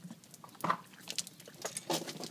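Horse mouthing and drinking from a plastic water bottle: a scatter of short crackles and clicks from the plastic, loudest just before the end.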